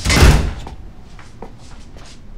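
A door being opened: one loud, sudden knock-and-rattle in the first half-second, then a few faint taps.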